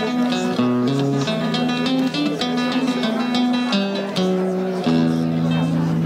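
Nylon-string acoustic guitar being played: quick runs of plucked notes over longer held lower notes.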